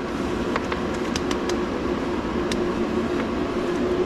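A few light clicks and ticks as multimeter test leads and ballast wire ends are handled, over a steady mechanical drone with a constant hum.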